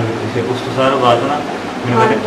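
A man speaking: interview speech in a small room.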